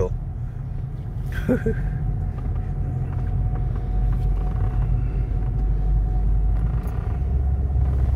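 Steady low road and engine rumble of a moving car, heard from inside the cabin, with a short laugh at the start.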